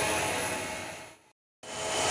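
Steady running noise of pyrolysis plant machinery, an even hiss-like rush with a faint hum. It fades away to a brief complete silence about a second and a half in, then comes back.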